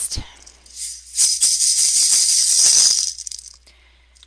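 A hand rattle shaken steadily for about two seconds, starting about a second in, with a few looser shakes trailing off after that.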